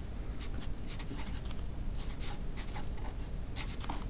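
Sharpie permanent marker writing on paper: quick, irregular strokes of felt tip on the sheet, over a steady low hum.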